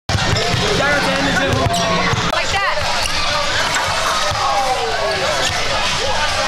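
A basketball being dribbled on a gym floor for the first couple of seconds, the thumps stopping, with people talking and laughing around it.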